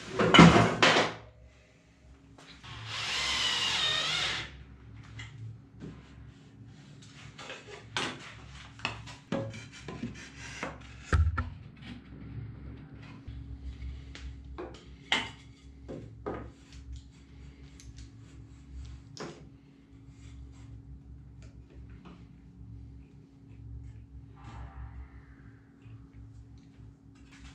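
Wooden battens being handled and knocked against a timber frame, with a run of short clicks and knocks as one-hand bar clamps are set to hold a batten in place. A louder rasping burst lasting about a second and a half comes about three seconds in.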